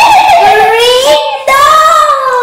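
Young girls' high voices in long drawn-out sung notes: two long notes, the second rising in pitch.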